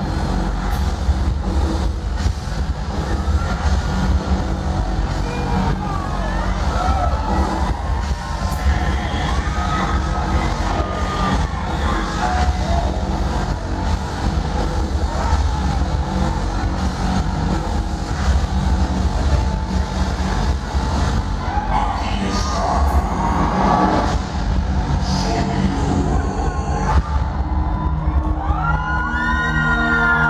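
Loud amplified concert music over a PA with a steady heavy bass, and a crowd cheering and whooping over it. Near the end, long held electronic tones come in.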